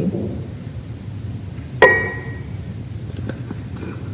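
A single sharp clink of glass about two seconds in, ringing briefly, from a glass seasoning shaker jar knocking during sprinkling, followed later by a few faint light ticks.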